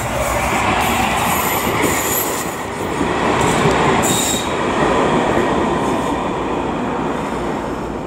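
CAF Urbos low-floor tram passing close by, its wheels rolling on the rails in a steady rumble that is loudest about four seconds in. Brief high-pitched wheel squeals come around two and four seconds in.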